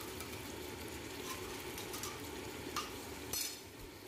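A whole chicken frying in oil and onion in a steel pot, with a steady sizzle. A few light clinks of a spoon against the pot come through it, the strongest near the end.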